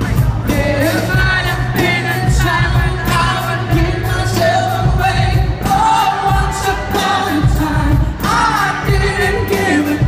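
Live pop music: a male lead singer sings a melody into a microphone, with some held notes, over an amplified band with a steady beat and heavy bass.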